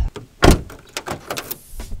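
A car door shuts with one loud thud about half a second in, followed by a few light clicks and taps.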